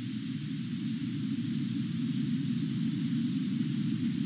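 Steady, unchanging hiss with a low hum beneath it: the background noise of the recording, with no distinct event.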